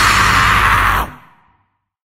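Hardcore punk band's closing chord: distorted guitars and cymbals held, then cut off about a second in with a brief ring-out as the recording ends.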